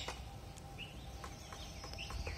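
Quiet outdoor ambience: faint bird chirps over a low rumble of wind on the microphone, with a few light clicks.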